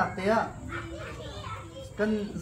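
People talking, with children's voices among them.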